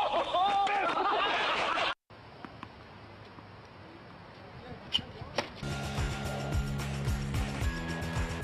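A person's voice calling out, then, after an abrupt cut, faint tennis-court ambience with two sharp knocks about five seconds in from a racket striking a tennis ball on a serve. Background music with a steady beat comes in just after.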